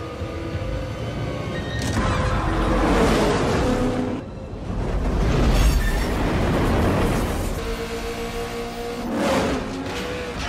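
Dramatic action-film music mixed with racing sound effects: loud rushing swells of speeding cars and a passing train, about two to four seconds in, again from five to seven seconds, and briefly near the end.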